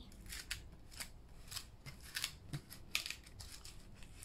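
Fingers scratching and rubbing over the textured touch-and-feel patch on a children's board book page, a run of short, irregular, scratchy strokes.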